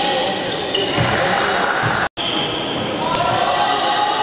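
Live basketball game sound in an indoor gym: a basketball bouncing on the court and voices from players and benches. The sound cuts out for an instant about halfway through.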